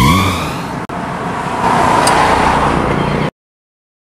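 A car engine revving, rising in pitch, then a steady rushing car sound that swells about two seconds in. It all cuts off abruptly to silence a little over three seconds in.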